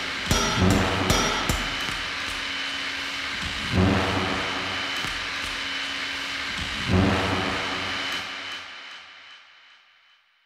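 Indie rock band ending a song: a few drum hits, then two big chords struck about four and seven seconds in and left to ring, dying away to nothing near the end.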